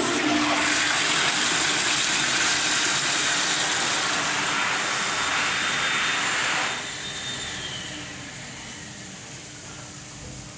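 Commercial toilet with a chrome flushometer valve flushing: a loud rush of water for about seven seconds drops off sharply as the valve shuts. A faint falling whistle follows, then a quieter trickle as the bowl settles.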